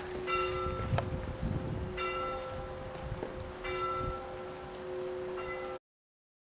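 Church bell ringing, struck again about every one and a half to two seconds, each stroke's hum ringing on into the next, with a second, higher bell tone joining in just after the start. The sound cuts off suddenly near the end.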